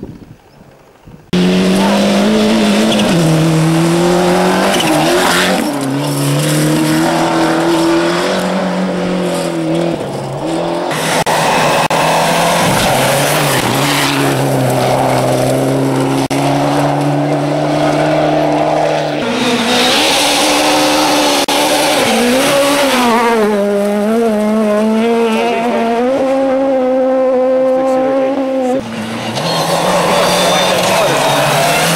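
Rally car engines running hard at high revs on a gravel stage, the engine note rising, falling and holding in pitch. It starts abruptly about a second in and stays loud throughout.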